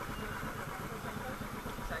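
Motorcycle engine idling with a steady low pulsing.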